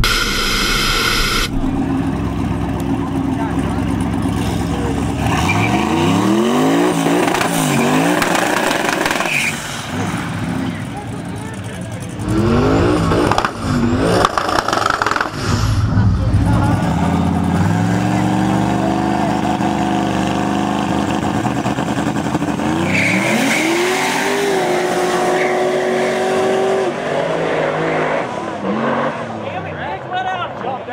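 A nitrous Mustang and a turbocharged LS-powered Malibu launching and accelerating hard. The engines rev up in repeated rising sweeps, each broken off at a gear shift.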